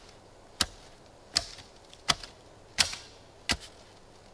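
A shovel blade driven down into the forest ground again and again: five sharp strikes about 0.7 s apart, evenly paced.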